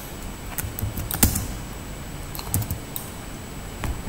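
Computer keyboard being typed on: a few irregular keystroke clicks, bunched about a second in, again a little past the middle, and once more near the end.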